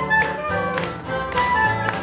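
A live dance band playing an instrumental passage, a violin among the instruments, with tap dancers' shoes striking the wooden floor in time to it, sharp clicks about twice a second.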